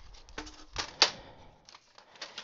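A plastic paper-crafting scoring board and cardstock being handled and set down on a cutting mat: a few light knocks and paper rustles, the sharpest knock about a second in.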